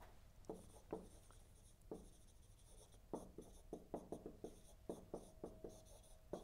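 Marker pen writing on a whiteboard: faint short strokes and taps, a few scattered at first, then coming quickly one after another from about three seconds in.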